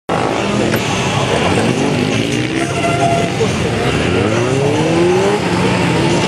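Motorcycle engines running loud, the revs climbing in repeated rising sweeps as a bike accelerates hard.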